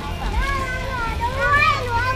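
A young child talking in a high voice, its pitch rising and falling, over a low steady background hum.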